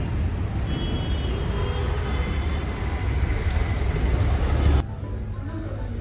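Road traffic noise, a steady low rumble, cutting off suddenly about five seconds in. A quieter indoor background follows.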